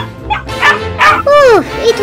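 Dubbed-in dog sound effect: short yips, the last one falling sharply in pitch, over background music.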